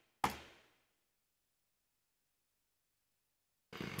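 A single sharp computer mouse click about a quarter second in, fading quickly, then silence; a man's voice starts just before the end.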